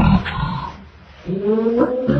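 A person's voice: a short vocal sound, a brief lull about a second in, then a long, slowly rising drawn-out vocal tone.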